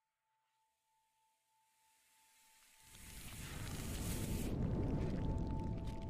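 Intro logo sound effect: a faint high held tone, then a rumbling whoosh that swells from about three seconds in and peaks near the end, with the held tones running under it.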